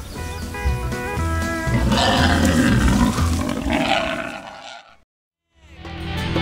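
Background music, with a loud animal roar laid over it from about two seconds in. The roar fades out near the end into a moment of silence.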